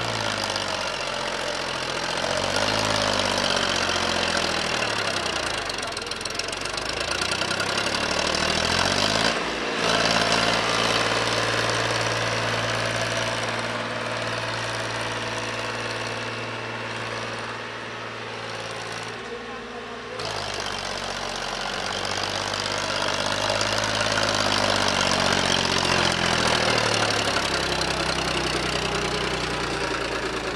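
Powertrac 434 DS tractor's three-cylinder diesel engine working hard under load as it pulls a heavily loaded double-axle sand trailer up out of a soft sand pit. The revs rise and fall near the start and again near the end, and hold steady through the middle.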